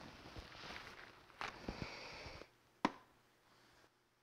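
Faint rustling and handling of a VR headset as it is pulled on over the head, ending in one short sharp click.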